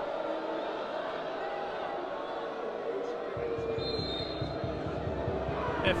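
Football stadium crowd murmuring and calling out while a penalty is awaited, the noise filling out lower from about three seconds in. A short high whistle about four seconds in is the referee's signal for the penalty to be taken.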